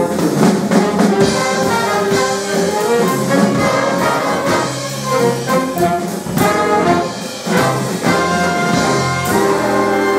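Jazz big band playing: a full section of trumpets, trombones and saxophones over piano, bass and drum kit, with drum strokes through the passage. About nine seconds in, the whole band settles onto one long held chord.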